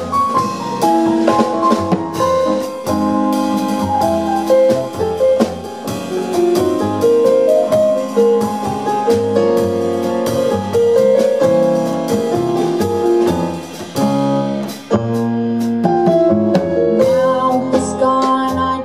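Jazz trio playing an instrumental break: a Yamaha Motif XS6 keyboard with a piano sound leads the melody over upright double bass and drum kit with cymbals. The band drops back briefly about three-quarters of the way through, then picks up again.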